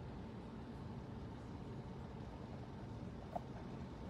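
Quiet room tone: a faint steady low hum and hiss, with one soft click a little before the end.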